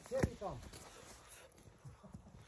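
A woman's short wordless vocal sound, a quick rising-and-falling "ooh", right at the start as she takes a bite of a hot roasted chestnut, then only faint soft sounds. It is her reaction to the chestnut's heat.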